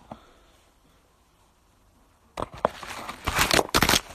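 Handling noise on a phone's microphone: loud rustling and scraping with sharp clicks, as the phone rubs against clothing, starting about two and a half seconds in after a quiet stretch.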